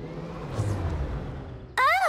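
Cartoon sound effect of a small electric car's motor trying to go: a low hum that swells and then fades away without the car moving off, because its battery is flat.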